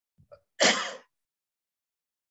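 A man coughing once, hard, into his hand, after a short faint catch of breath.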